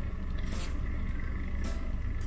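Nespresso Aeroccino 3 milk frother running on its hot setting, its whisk spinning in the milk with a steady low hum.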